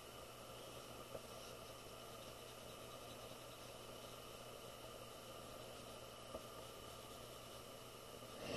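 Near silence: a faint steady hiss and hum of room tone, with two faint ticks, one about a second in and one near the end.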